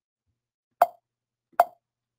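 Two short, sharp pops, the second about a second after the first.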